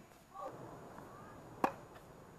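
A single sharp tennis-ball impact with a short ring, about three-quarters of the way through, over faint court background.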